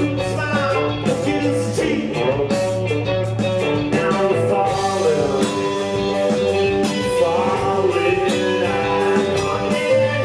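Live band playing a song: electric guitars, keyboard and drums, with a man singing lead vocals.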